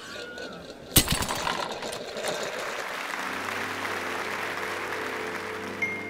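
Intro sound design: a sharp hit about a second in, then a rushing noise, with a held music chord coming in about three seconds in and running to the end.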